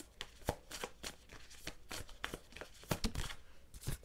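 A tarot deck being shuffled in the hands: an irregular run of short card clicks, several a second.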